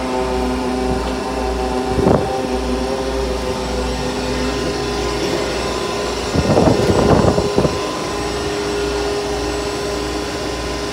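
Steady drone of a yacht's engine-room machinery running, with a low, evenly pulsing hum and several steady tones over it. A sharp knock comes about two seconds in, and a cluster of knocks near seven seconds.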